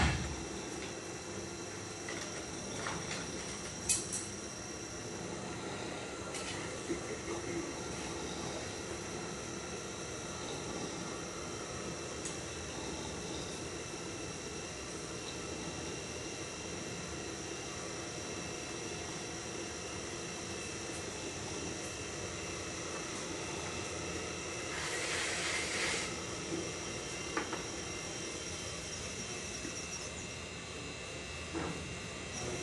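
Electric potter's wheel running steadily with a motor whine, while a trimming tool scrapes leather-hard clay from the turning piece. A sharp knock comes at the very start, and a louder, hissing scrape lasting about a second comes near the end.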